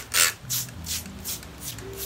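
Trigger spray bottle squirting rice water into wet hair: a couple of short hisses in the first half-second, then soft handling and rubbing noise in the hair.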